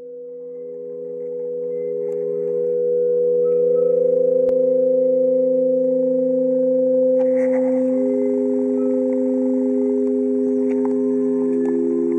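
A stone sound instrument of sawn stone slats, stroked by hand, gives several sustained, overlapping ringing tones. The sound fades in over the first few seconds. New pitches join about a second and a half in, near eight seconds and near the end, and a faint rubbing hiss sits over the tones from about seven seconds in.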